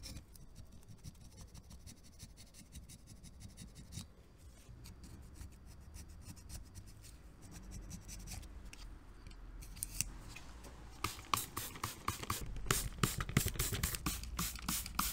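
A hand blade scraper scraping old grease and grime off an aluminium engine crankcase in short, scratchy strokes. In the last few seconds a quick run of sharp clicks takes over.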